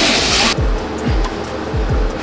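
A loud rush of noise that cuts off about half a second in, then background music with a deep, falling bass kick hitting a few times.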